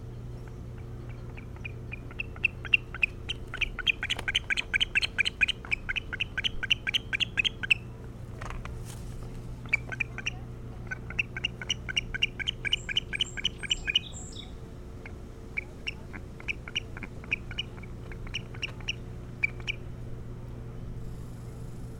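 Osprey calling: three runs of rapid, high chirps at about four a second, separated by short pauses, the first run the longest.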